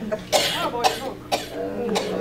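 Four short, breathy, cough-like bursts from a person, about half a second apart.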